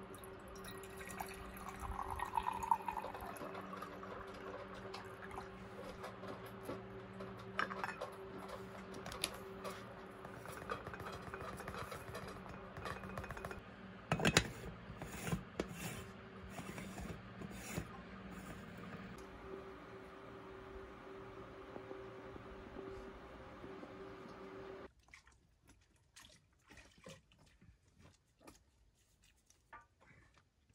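Water poured into the base of a stovetop moka pot, then a sharp metal clink about halfway as the coffee basket and upper chamber are fitted, over a steady low hum.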